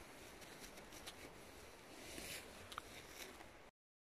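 Near silence: faint outdoor background with a few soft rustles and ticks, dropping to dead silence shortly before the end.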